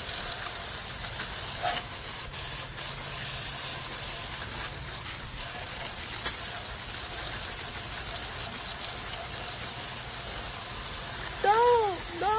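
Garden hose spray nozzle jetting a steady, hissing stream of water against a steel rear bumper and receiver hitch. Near the end a man's voice comes in with a few drawn-out, rising-and-falling notes.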